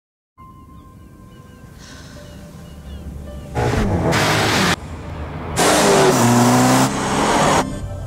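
Car engine revving in two loud bursts over a low, slowly rising musical drone. The first burst comes about three and a half seconds in and cuts off abruptly after about a second. The second starts a second later and runs for about two seconds.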